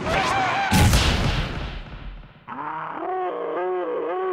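Cartoon sound effects and character voice: a shout with a heavy crash about a second in that dies away. Then, after an abrupt switch, a wordless cartoon voice gives quick wavering cries, about three a second.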